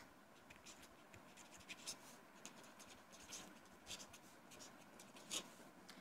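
Faint scratching of a pen writing on a sheet of paper, in short, irregular strokes.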